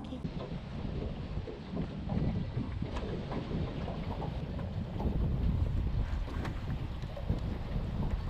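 Wind buffeting the microphone in an open boat on the water: a low, uneven rumble.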